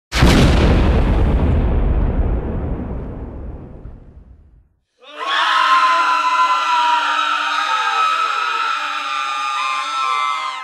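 An explosion as a petrol-soaked flag bursts into flames: a sudden blast whose rumble dies away over about four seconds. Then, about five seconds in, a crowd of people screaming together, held for several seconds.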